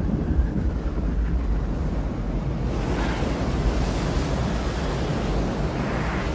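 Film sound effect of an asteroid striking the Earth: a steady, deep rumble with a hissing rush that grows louder about three seconds in.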